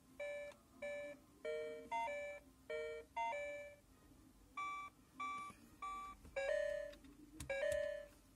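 Oregon Scientific Star Wars Clone Wars kids' learning laptop sounding a string of short electronic beeps at changing pitches, about two a second. The beeps pause briefly around the middle, and a longer tone comes near the end.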